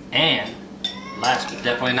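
Metal utensils clinking against dishes, with several separate ringing clinks.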